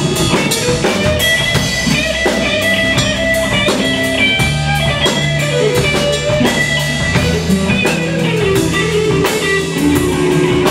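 A live blues band plays with no singing: electric guitar lines over electric bass and a Tama drum kit keeping a steady beat.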